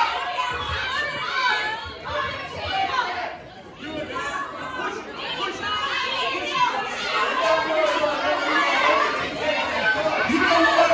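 Overlapping voices in a large hall: people talking and calling out over one another, none of it clear words, with a short lull about three and a half seconds in.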